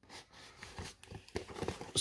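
Faint handling noise from a cardboard shipping box of blister-packed toy cars: light scuffs and taps of the card and plastic, with a quick run of small clicks in the second half.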